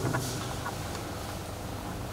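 A pause in a man's speech: steady low room noise with a couple of faint short clicks in the first second.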